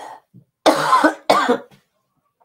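A woman coughs twice into her hand and a cloth held over her mouth. The two loud coughs come about half a second apart.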